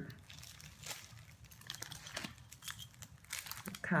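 Clear plastic bags around bath bombs crinkling as they are handled and swapped, in scattered irregular crackles.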